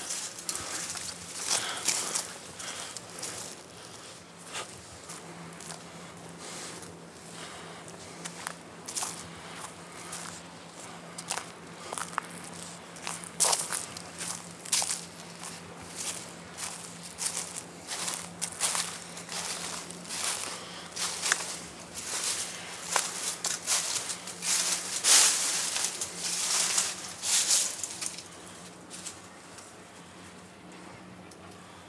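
Footsteps crunching through dry fallen leaves, an irregular run of steps with a denser, louder stretch of crunching about three-quarters of the way through.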